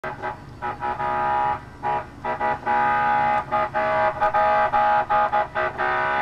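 A vehicle horn honking in an irregular string of blasts, some brief and some held for half a second or more.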